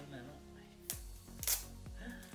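Small cardboard toy box being opened, its sticker seal broken, with two sharp clicks about half a second apart, the second the louder. Background music with a steady beat plays underneath.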